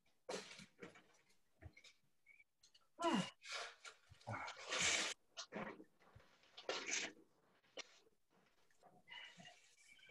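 A person breathing hard close to the microphone: irregular gasping breaths in and out, with a short voiced gasp about three seconds in.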